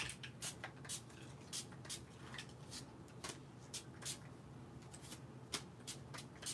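Quick, faint spritzes from a trigger spray bottle of homemade shimmer spray (rubbing alcohol mixed with shimmer paint) misting paper cards, about two short hisses a second.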